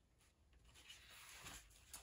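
Near silence with a faint rustle of paper being handled on a tabletop, coming up about half a second in.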